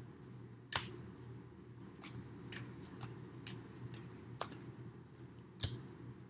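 Tarot cards handled by hand: quiet sliding and shuffling of the deck with a few sharp card snaps, the loudest just under a second in and two more near the end.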